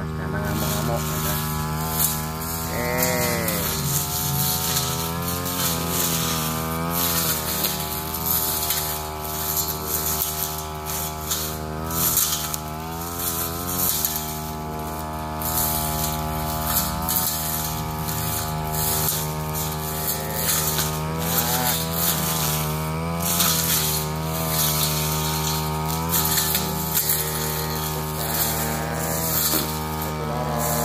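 Backpack brush cutter's small petrol engine running throughout, its pitch rising and falling again and again as the blade is swung through grass and ferns, with frequent sharp ticks.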